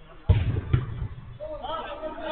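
Two heavy thumps from the football being struck in play, the first about a quarter of a second in and the second about half a second later, with men's voices calling out near the end.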